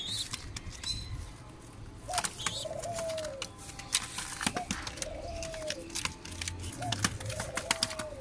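Fancy pigeons cooing: three drawn-out coos that rise and then fall, about two and a half seconds apart, with sharp clicks and taps throughout and a few short high chirps in the first second.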